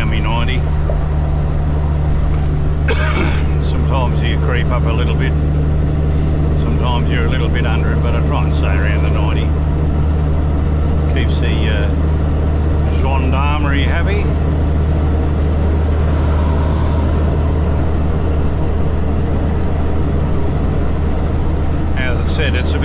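Truck's Cummins diesel engine cruising steadily at highway speed, heard inside the cab as a loud, even low drone with road noise. Short stretches of a voice come and go over it.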